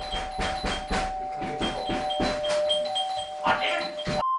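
Doorbell ringing without a break, as if the button is held down, a steady two-tone ring that cuts off suddenly at the end.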